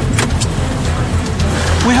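Steady low rumble of a car running, with a couple of sharp clicks a fraction of a second in.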